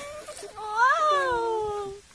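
Miniature schnauzer whining in excited greeting of its owner: one long high whine that rises about half a second in, then slowly falls and stops at the end.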